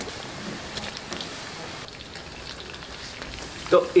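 Chicken pieces deep-frying in hot oil in a karahi, a steady sizzle with small crackles and pops.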